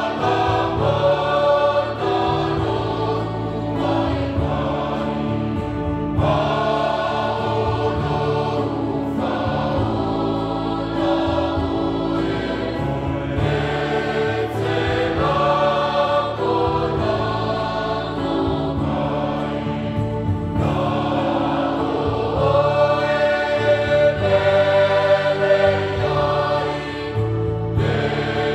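A mixed church choir of men's and women's voices singing a Samoan hymn in parts, in long held phrases, a little louder near the end.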